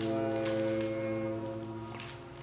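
French horn and bowed double bass holding long, low notes with the piano, fading away as the piece ends.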